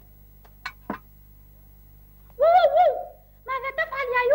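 Wordless voice of a cartoon character: a wavering hum-like sound about halfway through, then a run of short notes sliding up and down near the end. Before that, two faint short sounds as the pot is set down on the fire.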